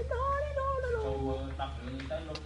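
A high-pitched, drawn-out voice held for about a second and a half with a wavering pitch, then dropping lower in short pieces. A steady low hum runs underneath.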